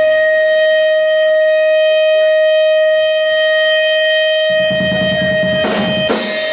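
Electric guitar amplifier feedback: one steady, loud high tone held unchanging. About four and a half seconds in, low bass notes join it, and a crash of drums comes just before the end as the band kicks in.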